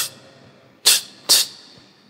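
A man imitating the ticking of an old wind-up clock with his mouth: two short hissing 'ts' ticks about half a second apart, near the middle.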